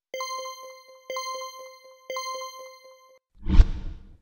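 Edited quiz-style sound effect: a bright electronic chime sounding three times about a second apart, with light ticking between, like a countdown timer. Near the end, a short low whoosh as the on-screen answer choices appear.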